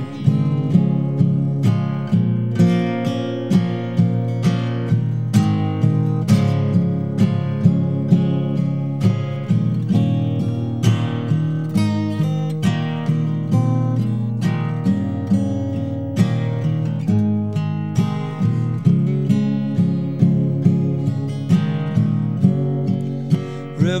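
Acoustic guitar played solo in an instrumental passage without singing, strummed in a steady rhythm.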